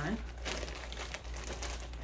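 Frosted plastic clothing-package bag crinkling and rustling as it is handled, a run of fine irregular crackles.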